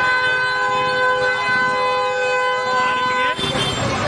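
A vehicle horn held in one long, steady blast of about three seconds, cut off abruptly, over the voices of a street crowd.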